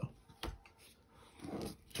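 Paper scratch-off lottery tickets being handled on a table: one light tap about half a second in, then mostly quiet, with a faint, brief rustle-like sound near the end.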